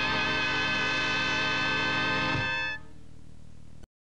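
A band with clarinet, trumpet and trombone holds a long final chord that stops about two-thirds of the way through. A quieter tail follows, and the sound then cuts off suddenly.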